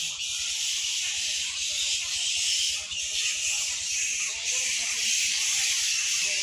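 Steady, dense high-pitched insect chorus from the forest trees, a continuous shrill hiss.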